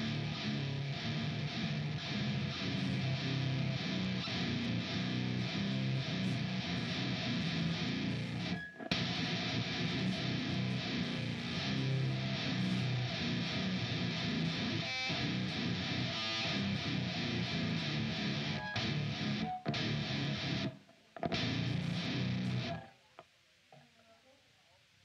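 A live hardcore punk band playing loud, distorted electric guitars over drums, with short sudden stops about 9 and 20 seconds in, then cutting off abruptly near the end as the song finishes.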